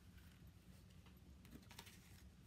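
Near silence: a steady low room hum with a few faint light clicks, bunched together in the second half.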